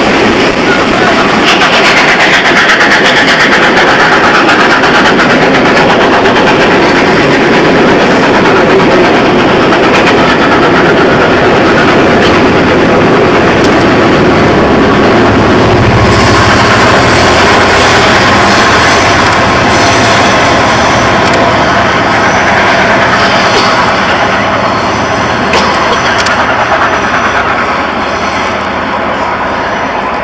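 Steam train passing close below on the Folkestone Harbour branch, headed by the three-cylinder Bulleid light Pacific 34067 Tangmere: a loud, continuous din of coaches running on the track and locomotive exhaust. It eases a little near the end as the train pulls away.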